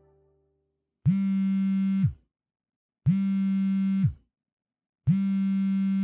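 Three identical low electronic buzz tones, each held steady for about a second, two seconds apart.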